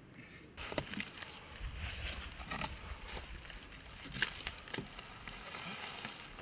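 Dry straw and dead pumpkin vines crackling and rustling, with several sharp snaps, as a large pumpkin is handled among them. The sound starts abruptly about half a second in.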